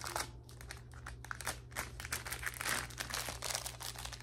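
Plastic packaging crinkling as it is handled: a dense run of irregular rustles and crackles.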